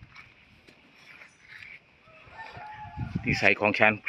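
Faint open-air ambience with a distant, drawn-out animal call about two seconds in.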